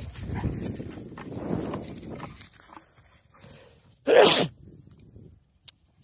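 Dogs playing at close range over a stick: a scuffling noise for the first two seconds or so, then one short, loud outburst from a dog about four seconds in.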